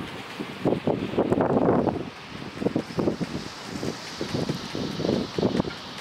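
Wind buffeting the microphone in uneven gusts, strongest between about one and two seconds in.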